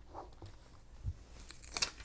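Faint handling of a sticker sheet against clear plastic binder sleeves: a soft tap about a second in, then a brief plastic crinkle near the end.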